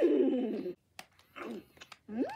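FurReal Friends Cinnamon animatronic pony toy playing a recorded pony vocal sound through its small speaker as its mouth switch is pressed: a call that rises and falls in pitch, then a buzzy low stretch, followed by a single sharp click about a second in.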